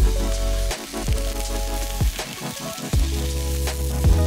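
Food sizzling in a frying pan, under background music with a deep bass line and a drum hit about once a second.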